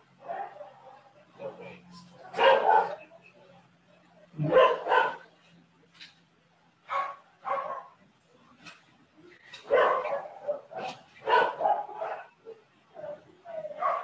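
A dog barking repeatedly in short barks, singly and in pairs, over a steady low hum, picked up by a participant's open microphone on a video call.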